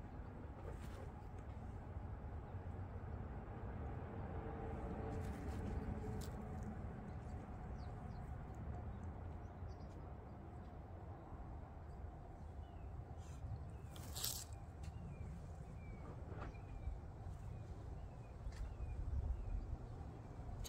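Hands working loose potting soil and bark mulch around seedlings in a raised bed, with scattered soft rustles and one sharper rustle about two-thirds through, over a steady low rumble of wind on the microphone. A few faint bird chirps come in the second half.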